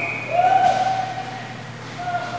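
Inline skate wheels squealing on the rink's plastic floor tiles: a short high squeal, then a longer, lower and louder squeal lasting about a second.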